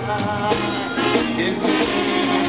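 Live Mexican banda music: brass (trumpets and trombones) and drums playing over a steady beat, with a male singer in the mix.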